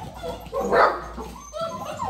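A litter of young puppies whining and yipping, excited for their food. One louder yip or bark comes about three-quarters of a second in.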